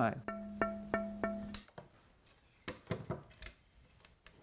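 A strip of bow-making wood tapped four times in quick succession, giving a clear, sustained ringing tone that stops suddenly after about a second and a half. The bowmaker is testing the wood for the ring he looks for in a good bow stick. A few soft knocks from handling the wood follow.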